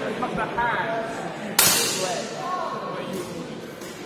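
A single sharp clash of steel training longswords about one and a half seconds in, ringing briefly in the large hall, with chatter underneath.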